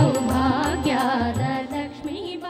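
Kannada devotional bhajan music: a melody with sliding, ornamented notes over low drum beats about twice a second, beginning to fade near the end.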